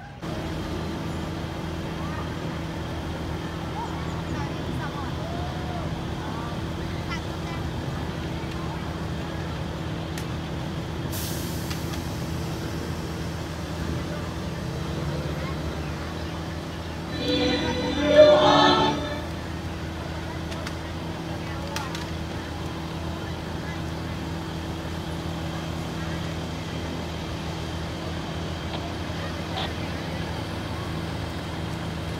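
A steady low engine hum, with a brief loud voice about seventeen seconds in.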